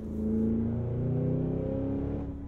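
Supercharged 6.2-litre V8 of a Cadillac Escalade V accelerating under load, its note climbing steadily in pitch, heard from inside the cabin.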